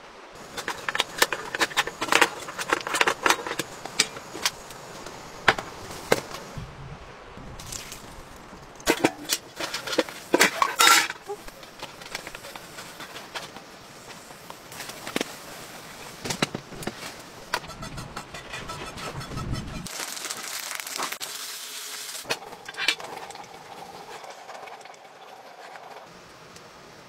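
Camp cooking sounds: a run of clinks, taps and knocks from metal cookware, with rustling of food packets, and a steadier hiss for a couple of seconds later on.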